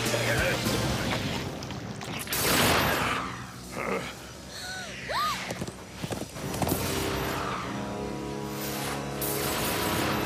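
Cartoon action-scene soundtrack: dramatic background music under a run of sound effects. Several loud rushing crashes come in the first seven seconds, with a few short rising-and-falling squeals around the middle. The music then settles into held chords.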